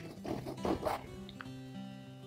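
Soft background acoustic guitar music with held notes, and a few short faint noises in the first second.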